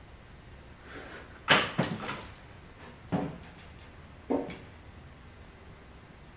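A few short metal clunks as a homemade racing lawnmower chassis is set down onto its wheels and rear shock: the loudest about a second and a half in with a brief rattle after it, then two smaller knocks over the next three seconds.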